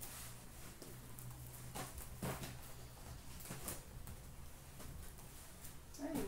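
Light taps and soft knocks as sealed cardboard hobby boxes of trading cards are picked up and stacked on a counter, about six over a few seconds, over a faint low hum.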